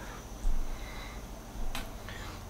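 A single short, sharp click near the end, with a dull low bump about half a second in, over low room noise.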